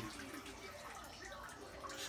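Faint dripping and trickling of water squeezed by hand out of wet hair, falling into a sink of water.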